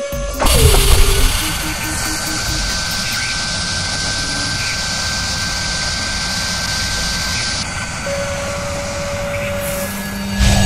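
Sound effects for an animated machine-tool logo: a heavy hit with a falling tone about half a second in, then a steady high whirring hiss with a thin whine over it, like a spindle cutting metal, and a short steady tone near the end.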